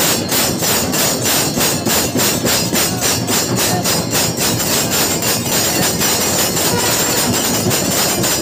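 Temple bells and cymbals clanging in a fast, even rhythm of about four or five metallic strikes a second, the ringing that accompanies the lamp-waving aarti.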